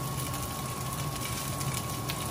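Cooked rice frying in hot oil in a skillet, a steady sizzle with a low hum underneath and a few faint utensil ticks near the end.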